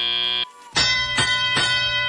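A steady electronic buzzing tone cuts off about half a second in. Then a ringing, bell-like field signal strikes three times, the FIRST Robotics Competition arena's cue that the driver-controlled period has begun.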